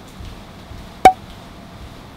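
A single sharp click about a second in, briefly ringing at one pitch, over quiet room tone.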